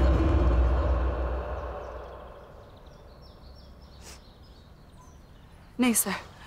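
Low rumble of a car engine fading away over the first couple of seconds, followed by birds chirping faintly outdoors.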